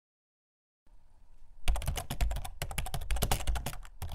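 Computer-keyboard typing sound effect: a quick, dense run of key clicks that starts faintly about a second in and is in full swing by the second half.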